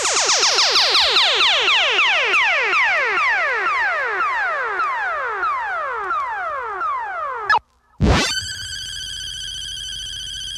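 Electronic sound effects from a turntablist battle record: a rapid run of overlapping falling-pitch sweeps, about four a second, for about seven and a half seconds. After a brief break comes a quick rising sweep and then a steady, high electronic tone.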